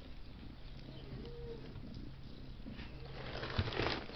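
A steady low machine hum with a faint, short low call about a second in. Near the end, rustling and a couple of knocks as cardboard boxes are brushed against close to the microphone.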